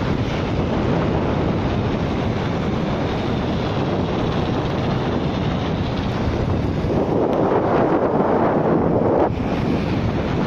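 Wind buffeting the microphone of a camera riding on a moving bicycle, a steady loud rushing noise. Near the end it swells for about two seconds, then drops off suddenly.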